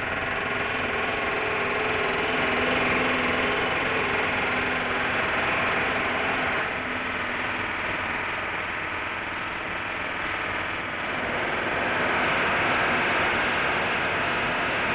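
Pneumatic riveting hammer working a rivet into a steel building column, a loud continuous rattling clatter that starts abruptly and eases slightly for a few seconds in the middle.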